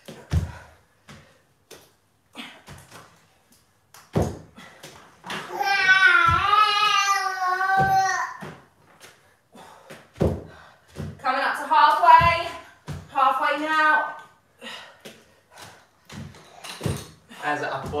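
Dumbbells knocking down onto exercise mats on a wooden floor, irregular dull thuds every second or two during renegade rows and press-ups. A high-pitched voice without clear words is loudest for about three seconds near the middle and sounds again a few seconds later.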